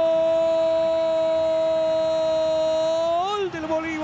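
Football commentator's long drawn-out 'goool' cry announcing a goal, held on one steady pitch and breaking off a little over three seconds in.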